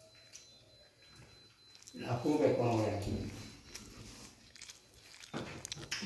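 Conversation in a language other than English in a small room: a voice speaks for about a second and a half about two seconds in, and another begins near the end, with a few faint clicks in the quiet stretch before.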